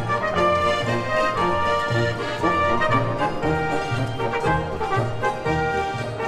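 Alpine folk instrumental music led by an accordion over a steady bass beat.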